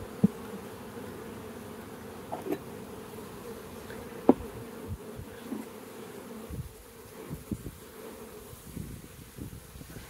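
Honey bees from an open, crowded nuc box humming steadily. Two brief, sharp knocks come from the wooden frames being handled, one right at the start and one about four seconds in.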